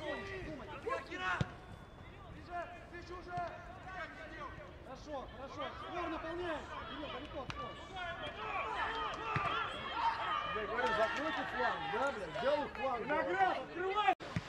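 Players and coaches shouting on a football pitch, the voices too distant to make out. They grow busier and louder from about eight seconds in, with a few sharp thuds of the ball being kicked.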